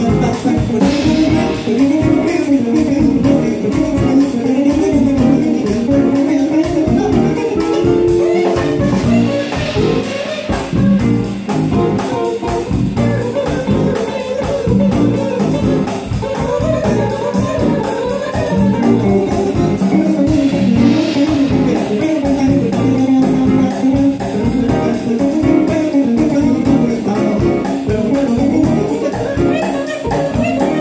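Live band playing an instrumental passage: electric guitar over bass guitar, drum kit and keyboard, with no singing.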